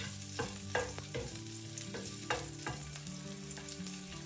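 Whole green chillies frying in hot oil in a nonstick pan, sizzling steadily, while a wooden spatula stirs them, with sharp clicks and pops, most of them in the first second and a half.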